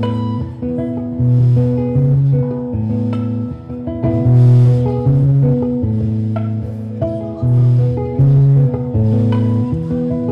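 Stratocaster-style electric guitar playing a slow instrumental passage, picking a repeating chord pattern over low notes that change about once a second.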